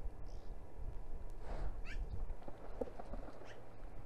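Outdoor ambience with a steady low rumble, and a few short, high, falling animal chirps about one and a half to two seconds in. Fainter calls follow between about two and a half and three and a half seconds.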